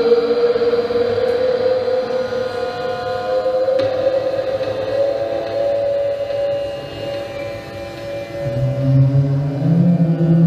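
Live experimental electronic music from synthesizers: sustained, wavering drone tones that slowly rise in pitch, with a deep low tone coming in near the end.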